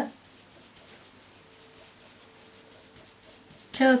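Faint, soft scratchy strokes of a paint brush being wiped on a paper towel to unload excess paint before dry-brushing.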